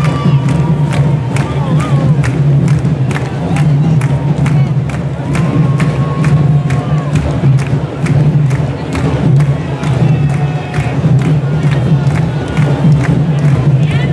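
Candombe drum line playing, with chico, repique and piano drums beating a steady rhythm of sharp strokes over a deep, continuous drum pulse. Crowd shouts and cheers rise above it.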